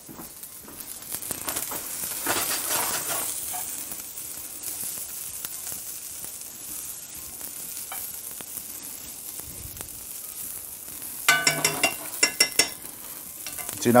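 Asparagus sizzling in butter in a cast-iron skillet, with a metal spoon working through the pan; the sizzle swells a couple of seconds in and then holds steady. A brief, louder pitched sound cuts in about eleven seconds in.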